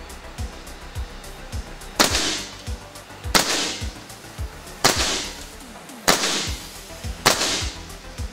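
Five shots from an Air Arms S510 XS Tactical .22 PCP air rifle with a shrouded barrel, each a short sharp report with a brief hissing tail, coming about a second to a second and a half apart from about two seconds in. Background music with a steady low beat plays underneath.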